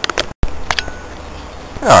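A few short clicks and taps of hands handling the test setup, over a steady low hum. The sound cuts out for an instant just before half a second in.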